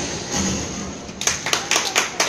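A quick, fairly even run of sharp taps, about four a second, starting a little past a second in, each ringing briefly in the hard-walled squash court.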